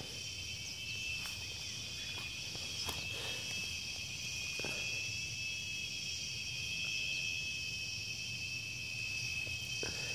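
Steady, high-pitched insect chorus, a continuous shrill trill, with a few faint scattered knocks and rustles underneath.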